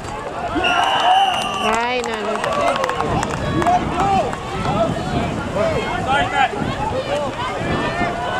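Many voices shouting and calling over one another at a canoe polo match. A whistle is blown once, about a second long, near the start, followed by a brief wavering trill and a few sharp knocks.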